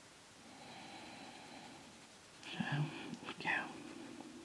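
Faint room tone, then about two and a half seconds in a woman's brief whispered mutter lasting about a second.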